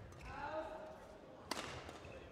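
A badminton racket strikes the shuttlecock once, a sharp crack about a second and a half in, echoing in a large sports hall.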